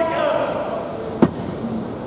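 A man's long, drawn-out cheering-squad shout ends just after the start and trails off, then a single sharp knock or slam sounds about a second and a quarter in.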